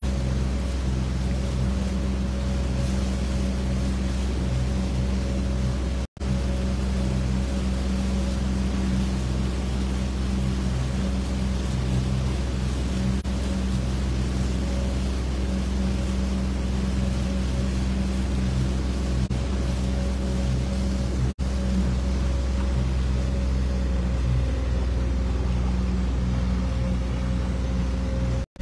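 Outboard motor running at a steady speed as the boat moves, under a rush of water and wind. The sound cuts out briefly twice, about six seconds in and again around twenty-one seconds in.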